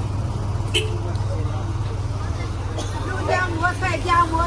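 Low, steady rumble of a bus engine, with people talking nearby.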